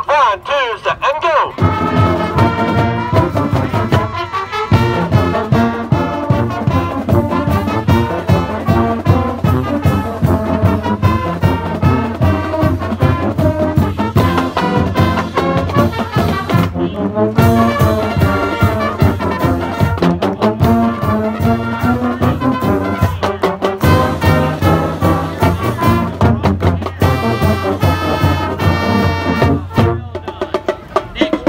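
A high-school marching band's brass section, trumpets and trombones, playing a tune over a steady drum beat. The band comes in about a second and a half in and breaks off briefly twice, in the second half.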